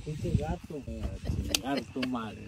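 People talking indistinctly, with a single sharp click about one and a half seconds in.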